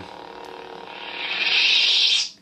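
Lightsaber soundboard effect: a steady low hum, then about a second in a loud hissing effect swells up, holds and cuts off sharply just after, the sound played as the blade's flash is triggered.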